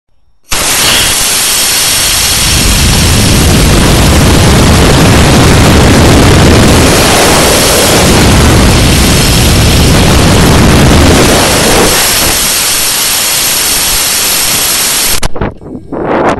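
A model rocket's motor burning, heard from a camera riding on the rocket: a very loud, steady rushing noise that starts abruptly at ignition about half a second in and cuts off suddenly near the end.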